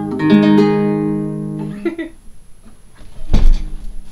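Acoustic guitar's final strummed chord ringing, then damped by hand about two seconds in, ending the song. Near the end comes a loud thump and a few knocks from the guitar being handled and moved.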